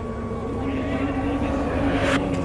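Cricket ground ambience between deliveries: a steady low drone with a faint hum of crowd noise.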